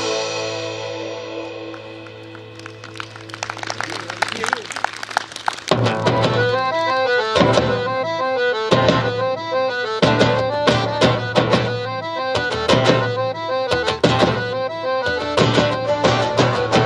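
Live folk band playing an instrumental passage on acoustic guitars and accordion. A held chord dies away, then strumming builds, and from about six seconds a steady rhythm of strummed chords with a beat takes over.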